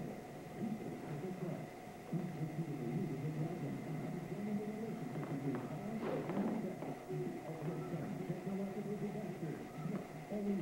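Indistinct, muffled talking throughout, with a short burst of noise about six seconds in.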